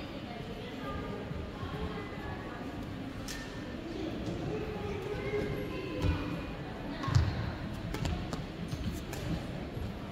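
Badminton racket strikes on a shuttlecock and thuds of feet on the court during a rally, a few sharp hits in the second half, the loudest about seven seconds in, over echoing background chatter in a large hall.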